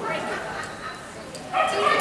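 A miniature schnauzer barking in high yips, loudest from about one and a half seconds in.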